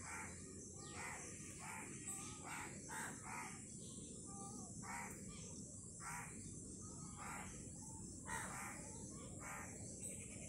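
Birds calling in a run of short, harsh, repeated calls, about one or two a second, over a steady high hiss.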